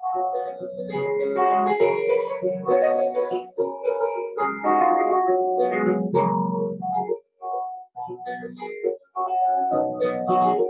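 Solo grand piano, chords and melody played continuously, with two brief silent breaks in the later part.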